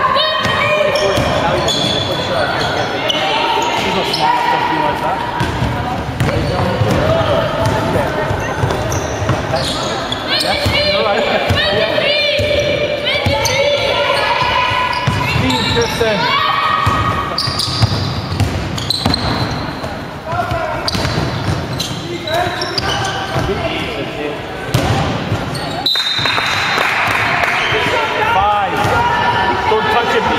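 Basketball bouncing on a wooden sports-hall court during play, with players calling out, all echoing in a large hall.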